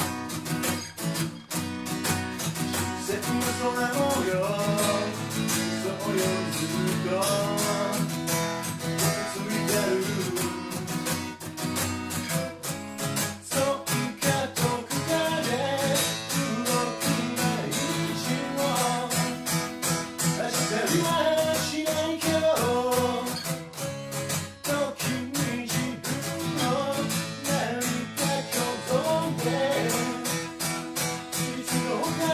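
Steel-string acoustic guitar strummed in a steady rhythm, with a man singing over it at times.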